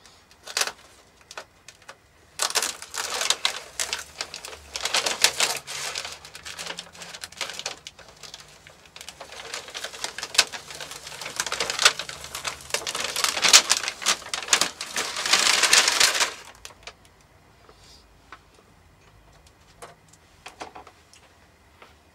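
Paper masking and masking tape being peeled off a painted model-aircraft wing and crumpled, a dense crackling rustle starting about two seconds in and stopping abruptly about sixteen seconds in, followed by only faint handling.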